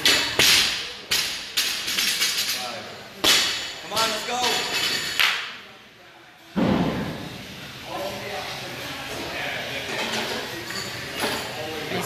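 Barbell loaded with rubber bumper plates knocking and thudding on a rubber gym floor, several impacts in the first few seconds and a heavier low thud about halfway through. Voices talk in the background.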